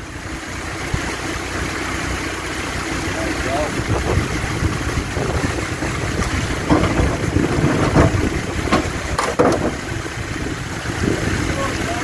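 Land Rover Discovery 2 engine running at low revs as the 4x4 crawls over boulders, growing louder over the first couple of seconds. Several sharp knocks and crunches of tyres and underbody on rock come around the middle.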